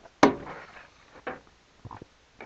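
Table saw rip fence being positioned and set: one sharp knock about a quarter second in with a short ring after it, then a lighter knock and a couple of small clicks.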